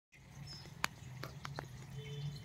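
A few short, sharp clicks, four in under a second with the first the loudest, over a low steady hum.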